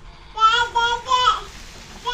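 A young child's high voice singing a short phrase of three held notes, stopping about halfway through.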